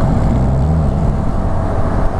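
Can-Am Spyder RT-S roadster's engine running steadily at cruising speed, with wind noise rushing over the rider's camera.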